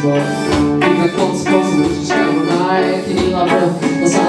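Live rock band playing: a male lead voice singing in Dutch over electric guitar, keyboards and drums.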